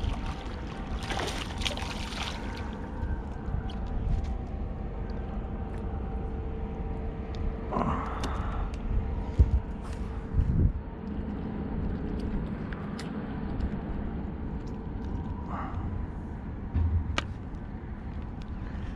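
A hooked bass splashes at the water's surface about a second in. This sits over a steady low rumble, with a few short knocks and splashy handling sounds later as the fish is brought alongside.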